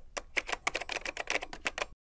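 Typing sound effect: rapid key clicks, about ten a second, for the letters of an on-screen title typing itself out, cutting off suddenly just before the end.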